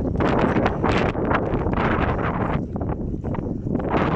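Wind buffeting the microphone: a loud, rough rush that rises and falls in gusts.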